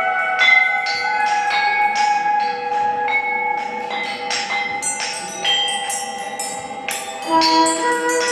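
Handmade bronze bells struck in an irregular stream, several strikes a second, each ringing on and overlapping the next, over a long held tone. A brighter, higher cluster of strikes comes near the end.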